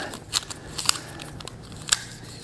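Wooden craft sticks clicking and rattling against each other as they are gathered into a bundle and wrapped with a rubber band; a few sharp clicks, one of the loudest near the end.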